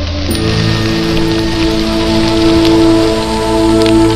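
Ambient background music built on sustained drone notes, over a steady hiss with faint crackles.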